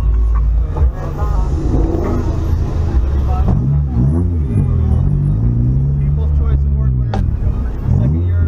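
Car engine and road rumble heard from inside a slowly moving car, a steady low drone with the engine note rising and falling several times.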